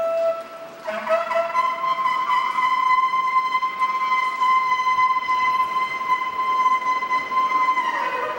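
Music: a wind instrument holds one long, steady high note for about seven seconds. It enters after a short break near the start and slides lower just at the end.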